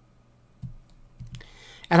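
A few quiet computer input clicks, spaced unevenly across about a second, as the cursor is moved through code in a text editor. Speech begins right at the end.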